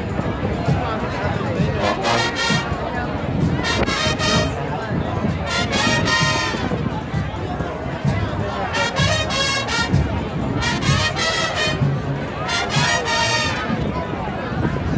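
Marching band playing brass and drums, with bright loud bursts about every two seconds, over crowd chatter.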